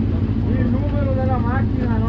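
Suzuki Hayabusa inline-four motorcycle engine in a single-seater hillclimb prototype idling steadily with the car at a standstill. A voice talks over it from about half a second in.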